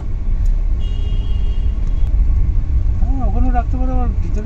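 Steady low rumble of a moving road vehicle, with a voice coming in about three seconds in.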